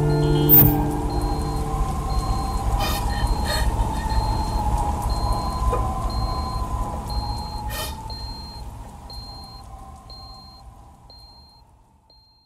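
The close of an electronic instrumental sound collage: held notes die away, leaving a low rumble under a wavering electronic tone and a short high beep repeating about one and a half times a second, with a few crackles. The whole sound fades out to silence at the end.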